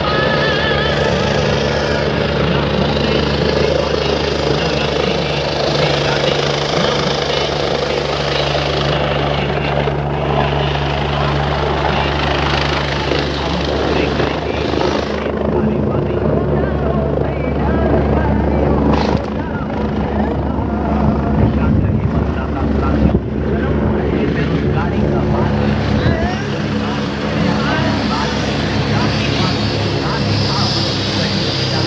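Helicopter coming in to land: the rotor and turbine run steadily as it descends, touches down on the field and sits with its rotor still turning, and a crowd's voices sound underneath.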